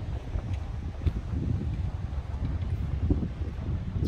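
Wind buffeting the microphone: an uneven low rumble that rises and falls in gusts.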